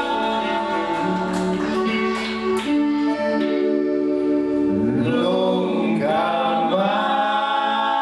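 A live band playing, with several men's voices singing together over guitars; the deep bass stops about halfway through, leaving the voices and guitars.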